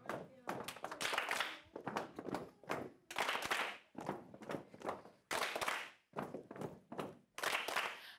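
A group of people clapping their hands together in a steady rhythm.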